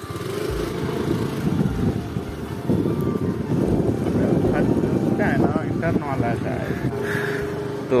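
Steady low rumble of a small two-wheeler engine running while riding along a road, with wind on the microphone.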